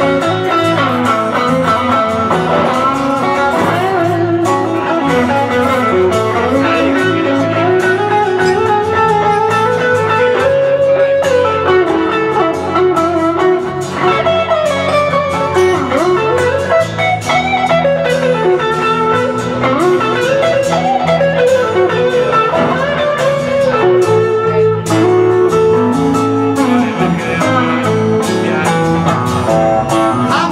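A blues band playing live with guitars only. Strummed acoustic guitar keeps the rhythm while a lead guitar plays a solo line of bent and sliding notes in an instrumental break without vocals.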